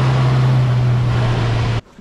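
1971 Ford Mustang's V8 engine running loudly at a held, raised speed, with one deep steady note over a rough rush of exhaust noise; the sound cuts off suddenly near the end.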